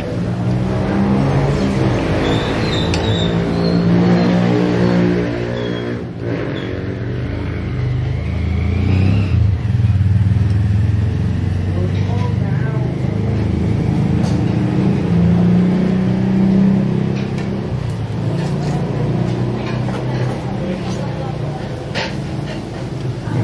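Motor vehicle engines running close by, swelling and fading several times as they pass, with voices in the background.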